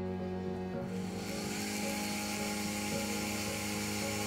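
Flex-shaft rotary handpiece running a rubber polishing wheel against mother-of-pearl, a steady hiss that sets in about a second in, under background music.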